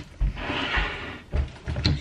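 A kitchen knife cutting into a cucumber, a rasping cut lasting about a second, with a few soft knocks of the knife and cucumber on a wooden chopping board and a sharp click near the end.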